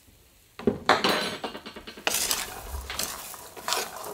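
A wooden spoon stirs cooked red (adzuki) beans in a nonstick wok, scraping and knocking against the pan as half a tablespoon of salt is mixed in. It starts about half a second in and continues with uneven clatter.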